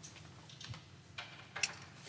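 A few scattered light clicks and knocks from someone handling things at a lecture-hall lectern, with the sharpest click near the end.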